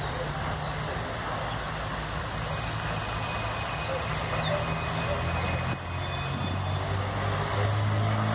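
Diesel-hauled passenger train pulling away from a station: a low steady engine drone over a broad rumble, growing louder near the end as the locomotive works harder.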